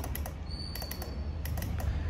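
A string of light, irregular clicks and taps over a faint steady low hum, with a brief faint high-pitched tone about midway.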